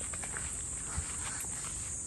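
Footsteps on a dirt path with a few soft scuffs, over a steady high-pitched drone of insects.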